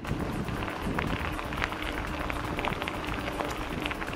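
Mountain bike tyres rolling over a gravel path: a steady crunching hiss with many small crackles and rattles, and wind on the microphone.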